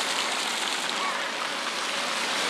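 Steady hiss of water falling and running in a thaw.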